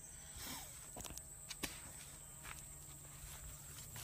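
Footsteps through grass and leafy undergrowth, a few scattered crackles, over a steady high insect drone.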